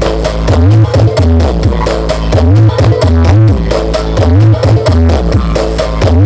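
Loud electronic dance music with heavy bass played through a large stacked outdoor sound system of subwoofer boxes and horn-loaded mid boxes, during a sound check. The bass line repeats the same rising-and-falling figure about every second and a third.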